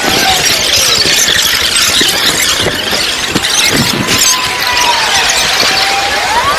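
A squealing tone that slides slowly down and back up in pitch several times, over a loud, dense wash of noise like crowd hubbub.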